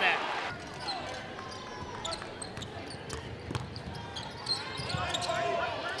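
Basketball arena game sound: a steady crowd murmur with a ball being dribbled on the hardwood court.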